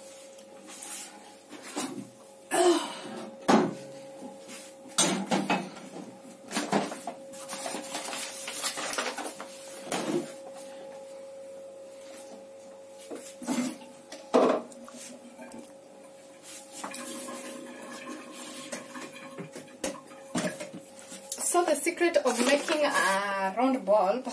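Kitchen cookware and utensils being handled: a string of separate knocks and clatters, with a faint steady hum underneath until near the end.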